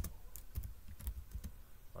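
Typing on a computer keyboard: a quick, uneven run of key clicks.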